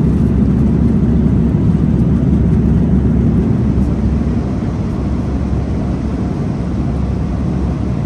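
Steady low rumble of an Airbus A340-300 economy cabin in cruise flight, the engine and air noise heard from a passenger seat, easing slightly in level after the middle.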